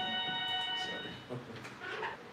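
A steady, chime-like electronic tone sounding several pitches at once, starting suddenly and cutting off after about a second.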